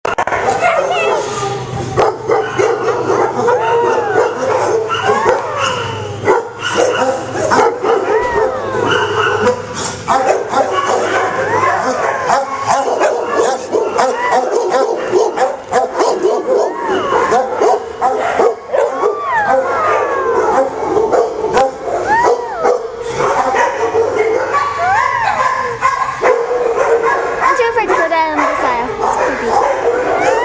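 Many kennelled dogs barking and yipping together without a break, mixed with high whines and howls that rise and fall.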